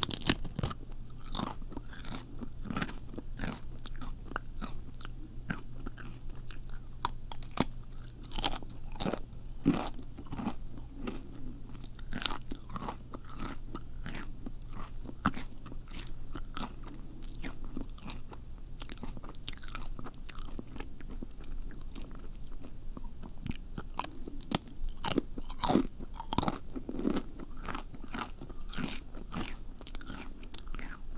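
Close-miked ASMR chewing of crunchy food: an irregular, continuous run of crisp crunches and bites.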